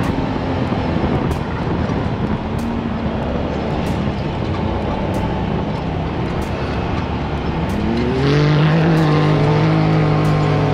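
A side-by-side UTV's engine running under load while driving over sand dunes. About eight seconds in, the engine note rises and holds higher and a little louder as the machine climbs a dune.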